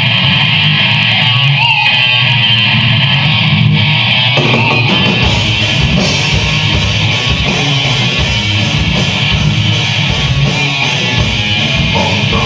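Live rock band playing a song's instrumental opening: electric guitar alone at first, with deep low end joining about four seconds in and drums with cymbals about five seconds in.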